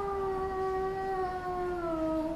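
A young girl singing unaccompanied, holding one long note that sinks slowly in pitch near the end.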